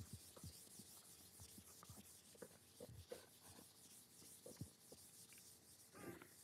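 Near silence: faint scattered taps and soft rubbing of chalk writing on a blackboard.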